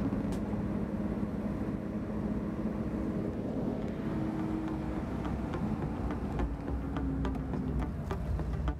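Car engine and road noise heard from inside the cabin, running steadily as the car drives along a mountain road.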